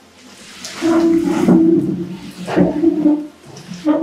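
Heavy rain falling. A loud low steady drone comes in twice over it, first about a second in and again more briefly near the three-second mark.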